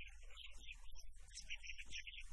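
Faint birds chirping in quick, broken bursts over a steady low electrical hum.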